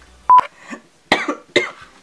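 A short kiss smack and a brief electronic beep, then two short coughs about half a second apart.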